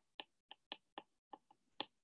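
A stylus tapping and clicking on a tablet's glass screen while writing by hand: a run of light, sharp clicks at about four a second.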